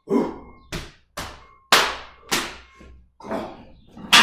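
A lifter's sharp, forceful huffs of breath, about six quick ones in four seconds, each starting abruptly and fading fast, as he psyches up to unrack a heavy barbell for a back squat.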